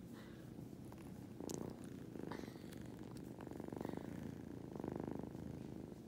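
A kitten purring while a finger strokes its head, a sign of a content, drowsy cat. The purr swells and fades about four times, with each breath.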